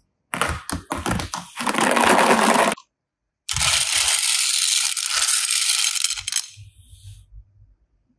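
Hard plastic toys and beads clattering: a run of sharp clacks that thickens into a dense rattle for about two seconds, then after a short pause a steady, hissing rattle of many small plastic pearl beads stirred by hand, fading out near the end.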